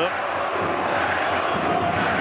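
Football stadium crowd noise: a steady din of many voices from the stands.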